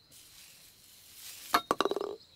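Cartoon sound effects on a crazy-golf hole: a faint swish, then about a second and a half in a sharp click and a quick clattering rattle of clinks.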